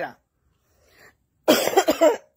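A woman coughs into her hand: one harsh burst about a second and a half in, after a short pause in her talking.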